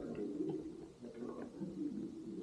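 A bird calling with low, repeated coos, several in a row.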